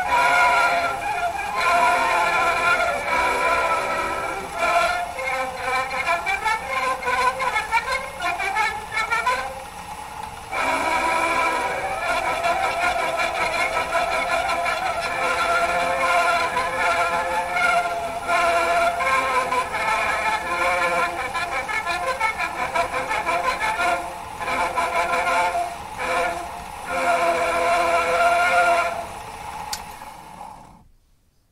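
A shellac 78 rpm record playing acoustically through a homemade gramophone's soundbox and horn: music with little bass and a surface hiss. The sound fades out near the end as the turntable is stopped at the record's end.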